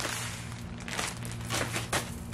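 Plastic bag crinkling as it is squeezed and rolled to push the air out, with a few light crackles.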